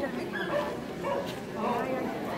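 A dog vocalizing twice, briefly, over the chatter of people in a large hall.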